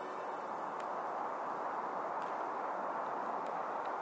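Steady outdoor background noise: an even, low rush with a few faint ticks.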